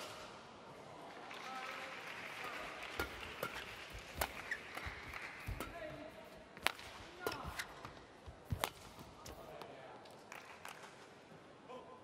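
Badminton rally: the sharp cracks of rackets striking the shuttlecock, about six hits roughly a second apart, ending a few seconds before the end.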